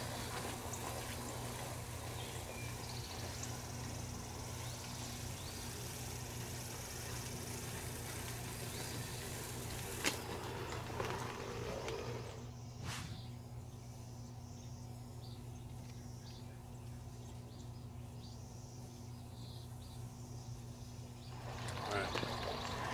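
Outdoor ambience: a steady low hum with faint bird chirps, a single click about ten seconds in, and the background turning quieter a few seconds later.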